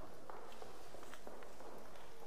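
Soft footsteps of a man walking across a carpeted floor: a few faint, irregular steps over a steady low hiss.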